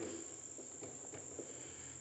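Faint light scratches and taps of a felt-tip marker writing on a whiteboard, under a steady high-pitched trill.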